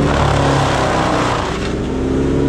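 Bandit wood chipper running under load as leafy branches are drawn through: engine drone under a loud shredding rush of chipping that eases off about a second and a half in.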